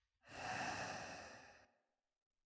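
A person sighing: one long breathy exhale that starts suddenly and fades away over about a second and a half.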